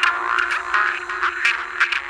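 Progressive psytrance in a sparse passage with no kick drum or bass. Squelchy gliding synth sounds and scattered sharp clicks play over a held note.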